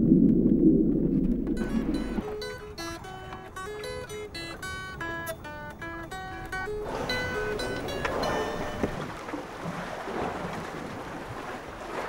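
A low rumble for about the first two seconds, then a guitar playing a picked single-note melody, its notes thinning out over a soft noisy wash in the second half.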